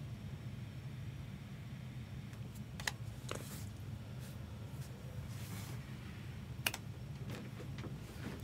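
Steady low hum with a few scattered light clicks and taps, spaced irregularly through the span.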